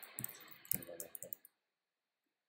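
Computer keyboard typing: a handful of sharp key clicks that stop about a second and a half in.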